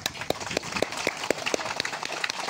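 An audience clapping: a dense run of quick, irregular hand claps.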